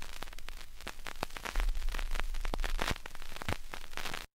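Surface noise of a 45 rpm vinyl single playing past the end of its recording: dense crackle and sharp clicks over a low rumble.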